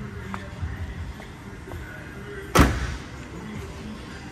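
A single loud, sharp slam from the car's bodywork about two and a half seconds in, with a few faint clicks before it.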